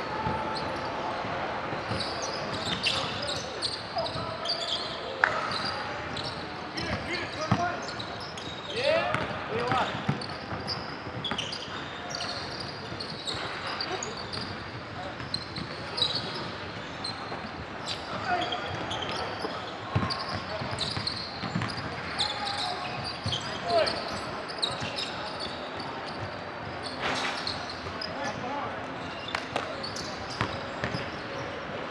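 Basketball bouncing on a hardwood gym court during a game, with sharp knocks scattered through and indistinct voices of players in a large hall.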